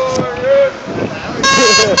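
Voices, then about halfway through a horn starts sounding one steady, high single note. It holds with a brief break.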